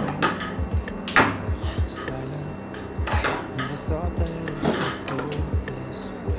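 Carbon-fibre quadcopter frame plates and arms clicking and clattering against each other as they are handled and fitted together, with a few sharper knocks. Background music with a steady beat plays underneath.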